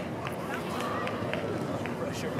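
Open-air field ambience on a youth soccer pitch: faint, indistinct calls of players and spectators over a steady background rush.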